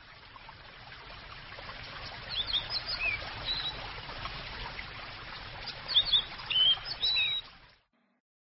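Birds chirping in short, high calls over a steady outdoor hiss, all fading in at the start and fading out just before the end. The chirps come in two clusters, one just before the middle and one near the end.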